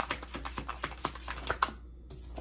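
Tarot cards being shuffled by hand: a rapid run of light clicks and flicks that stops shortly before the end.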